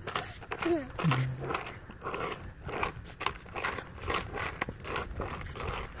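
Quad roller skate wheels rolling and scuffing on asphalt as she shuffles forward in short pushes. About a second in, a brief falling vocal sound runs into a low hum.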